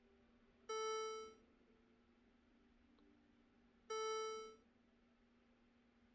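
Two electronic chime tones about three seconds apart, each starting sharply and fading out in under a second, over a faint steady hum.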